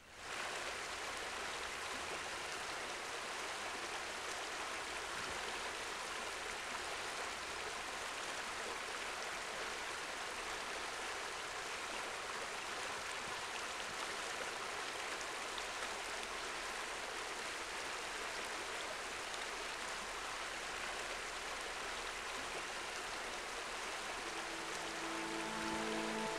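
River water rushing over rocks in shallow rapids: a steady, even rush that fades in at the start. Soft music comes in near the end.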